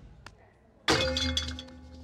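Cartoon soundtrack: a few faint steps, then about a second in a sudden loud crash with bright ringing, over a held low chord that rings on.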